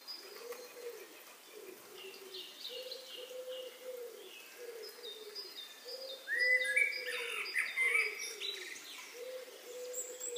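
Birds chirping and cooing at the start of a song's intro: short high chirps over a low cooing call that repeats about every half second, with a louder flurry of rising chirps a little past the middle.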